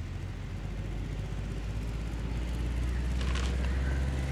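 Low steady rumble of a vehicle engine, slowly growing louder, with a few faint clicks near the end.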